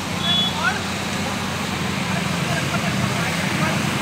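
Steady road traffic noise, an even low rumble of vehicles, with a brief faint higher-pitched sound in the first second.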